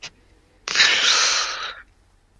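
A loud, breathy hiss like a long exhale blown close to the microphone. It starts about two-thirds of a second in and fades out over about a second.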